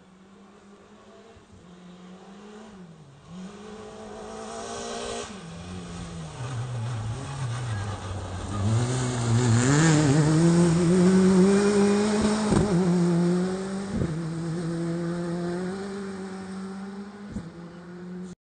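Rally car's engine approaching from afar, its note dropping as it slows for a gravel hairpin, then climbing hard as it accelerates out of the bend about ten seconds in, the loudest moment, with gravel spraying from the tyres. Two sharp cracks follow as it pulls away, the engine note holding steady while fading.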